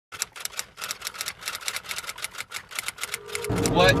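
Rapid, evenly spaced typewriter-style key clicks, about seven a second, sounding while the on-screen title is written in. They stop about three and a half seconds in, when steady car-cabin road rumble and a man's voice begin.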